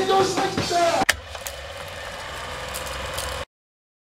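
A live rock band playing for about the first second, cut off by a sharp click as the VHS recording ends; the steady hiss and low hum of blank videotape follow, stopping abruptly into silence about three and a half seconds in.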